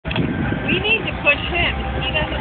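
Voices of people on nearby boats, heard over a steady low rumble, all through a phone's narrow-band microphone.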